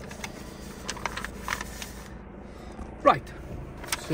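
Helicopter circling overhead, a low steady drone heard from inside a parked car's cabin, with light scattered clicks and rustles.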